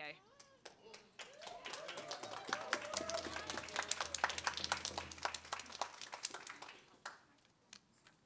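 Audience applauding, with a few voices mixed in. The clapping starts about a second in, builds, and fades out about a second before the end.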